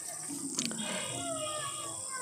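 Faint calls from birds or other animals: a few short notes that fall in pitch, over a steady high hiss.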